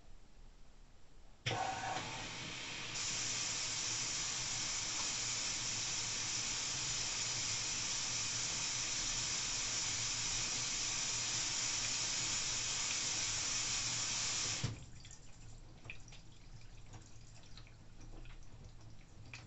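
LG AI DD 9 kg front-loading washing machine's water inlet valve opening with a click about a second and a half in, sending a steady rush of water into the drum to fill it for the final rinse. The flow shuts off suddenly with a thump about three seconds before the end, leaving faint ticks and drips of wet laundry tumbling in the drum.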